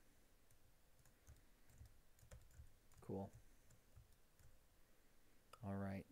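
Near silence with faint, scattered clicks of a computer mouse and keyboard.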